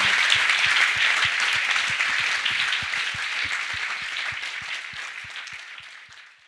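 Audience applauding, a dense patter of many hands clapping that fades out gradually toward the end.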